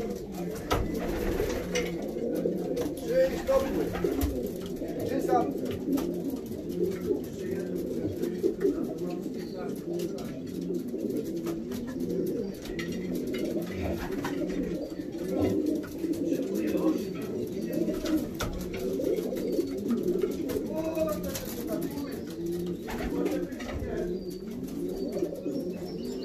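Many racing pigeons cooing continuously, their low warbling calls overlapping, with scattered light clicks.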